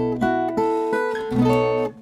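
Acoustic guitar fingerpicked in drop D tuning: a short phrase of plucked notes ringing over a low bass note, with a second strike about a second and a half in, stopping just before the end.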